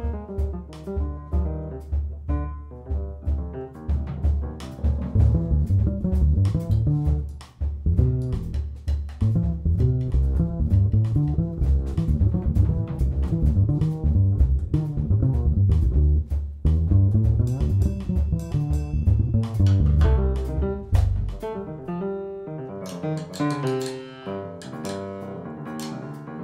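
Live jazz piano trio: a plucked double bass line leads, with upright piano and drum kit. About 21 seconds in the bass drops out, leaving piano notes and cymbals.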